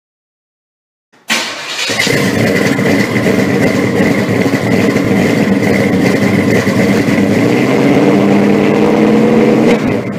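A loud engine comes in suddenly about a second in and runs steadily, its pitch rising slightly near the end, then cuts off.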